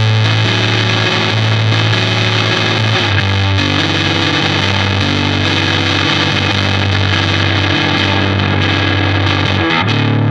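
Electric guitar played through an overdrive pedal with its drive all the way up and its boost rolled back, giving a very usable overdrive rather than a full blown-out sound. Sustained distorted chords, with a change of chord about three seconds in.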